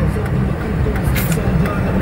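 Steady engine and road rumble heard from inside a car's cabin while it is being driven.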